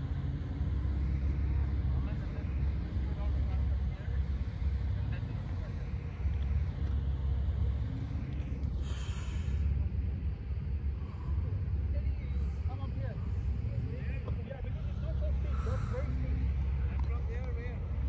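Gusty wind buffeting the microphone, a heavy low rumble that rises and falls, over a Jeep Wrangler's engine working in the distance to climb a steep, soft-sand dune. Faint voices come through in the second half.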